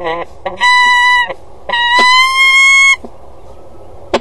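Peregrine falcon calling: two long, drawn-out calls, the second longer and rising slightly in pitch toward its end.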